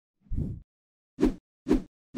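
Sound effects of an animated logo intro: a short low whoosh, then two quick plops about half a second apart.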